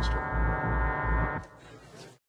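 Sustained blaring horn-like drone in the film's soundtrack, with many overtones, over a low pulsing beat about three times a second. It fades out about a second and a half in.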